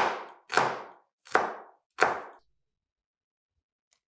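Kitchen knife chopping vegetables on a cutting board: four sharp chops a little under a second apart, each with a short ringing tail, stopping about two and a half seconds in.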